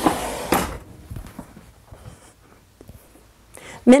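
Old wooden store-counter cash drawer being pushed shut: a wood-on-wood scrape ending in a knock about half a second in. Faint small clicks follow, and a woman's voice begins near the end.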